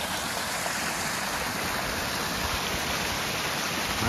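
Small mountain spring waterfall pouring over rocks: a steady, even rush of falling and splashing water.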